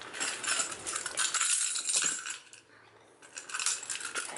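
Metal clinking and jingling as handbags are handled: quick runs of rattling clicks for about two seconds, a short pause, then more near the end.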